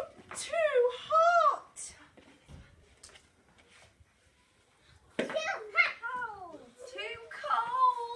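Young children's voices: short high-pitched calls and exclamations that rise and fall in pitch. They come in two clusters with a quiet spell of about three seconds between, and the recogniser catches no words in them.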